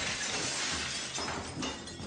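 A hammer smashing into a wall: a sudden crash, then a long crackle of breaking and falling debris that slowly tails off.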